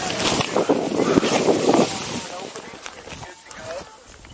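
Snowboard carving through deep powder snow: a spraying hiss of snow with wind on the microphone, loudest in the first two seconds and then fading.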